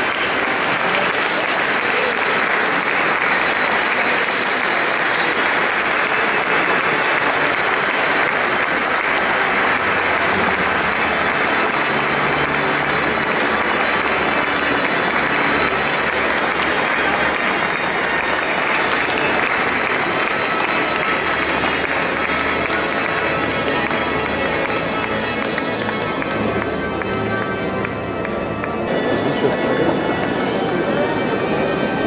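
A congregation applauding steadily over pipe organ music, both carried in the long echo of a large stone cathedral.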